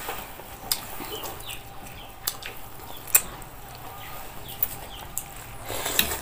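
Eating sounds: a metal spoon clinks sharply against a bowl and pot about six times at uneven intervals. Faint short high chirps sound in the background.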